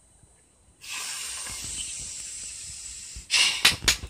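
Breath hissing steadily through a Paipo, a small plastic no-smoking pipe held to the mouth, for about two and a half seconds. Several short, loud bursts follow near the end.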